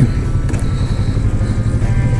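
Kawasaki Vulcan S 650's parallel-twin engine idling steadily while the motorcycle stands still, a low, even throb.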